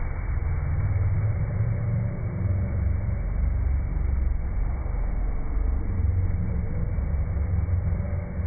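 FlowRider sheet-wave machine running: water pumped up the ride surface, heard as a steady low rumble with a fainter rushing hiss above it.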